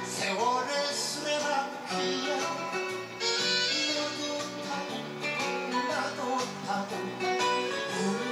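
A man singing a Korean popular song into a handheld microphone over instrumental accompaniment.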